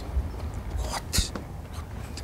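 A short, sharp hiss of breath about a second in, followed by a brief click, over a low steady hum.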